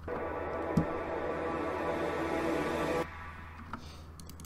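Playback of a music track's build-up section: a sustained, heavily reverbed vocal effect that fills in like a second pad. It cuts off suddenly about three seconds in, leaving a low hum.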